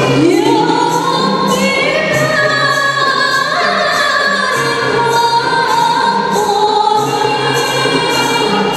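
A group of young women singing a qasidah together over rebana frame drums, which keep a steady beat of about two strokes a second. The voices carry one long, gliding melody line.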